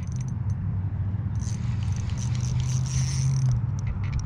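Spinning reel buzzing with rapid clicks for about two seconds, starting a little over a second in, as a hard-pulling fish fights on the line. A steady low hum runs underneath.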